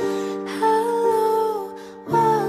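Slow acoustic cover song: a woman's voice holds one long, slightly wavering note over sustained accompaniment chords, fading near the end.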